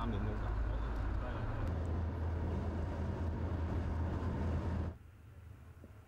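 Steady low rumble of a vehicle running, with road noise, which cuts off abruptly about five seconds in and leaves a faint hum.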